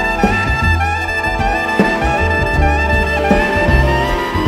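Soprano saxophone playing a wavering melodic line over a jazz band, with double bass notes and sharp drum hits, backed by an orchestra.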